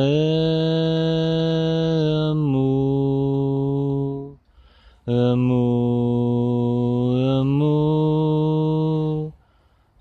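A single voice chanting a mantra in two long held phrases of about four seconds each, with a breath between them. The first phrase steps down in pitch about halfway through; the second steps back up.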